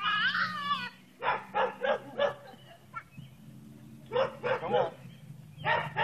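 A dog barking in short runs of three or four quick barks, with a high, wavering whine at the start and again near the end.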